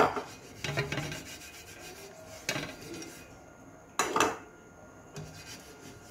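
A silicone basting brush stroking oil across a non-stick pan, in several separate rubbing strokes, the loudest near the start and about four seconds in.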